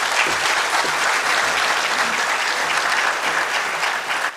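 Audience applauding steadily at the close of a speech.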